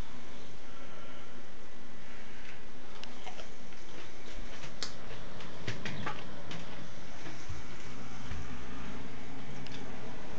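A person chewing a raw, underripe black Cayman chili pepper close to the microphone: a handful of faint wet mouth clicks and crunches, mostly in the middle stretch, over a steady room background.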